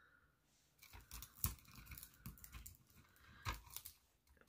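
Faint handling noises: small crackles and taps as double-sided tape is pressed down onto dried greenery stems on a wooden base. The two strongest clicks come about a second and a half in and near the end.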